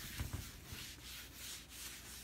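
Polishing cloth rubbing back and forth over a wooden surface, buffing a freshly applied beeswax and carnauba wax balm to a shine. The strokes are quick and soft, a few a second, with a couple of soft bumps in the first half second.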